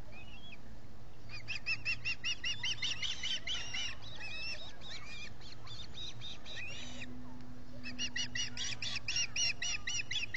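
Ospreys calling: a long run of rapid, repeated high chirps, about seven a second, starting about a second in, then a second run starting near the end.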